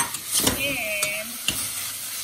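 Raw chicken cubes and onions sizzling in a stainless steel saucepan while a metal spoon stirs them, clicking sharply against the pan a few times.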